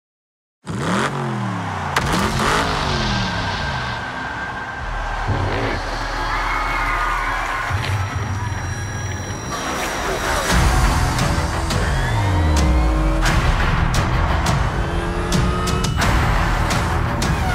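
Race car engines passing at speed, several times, their pitch dropping as each goes by, with tire squeal, over music. The sound cuts in suddenly out of silence about a second in.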